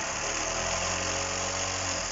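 Wilesco D101 model steam engine running fast and steady with its regulating valve opened up, a continuous even rattle from the engine and its belt drive.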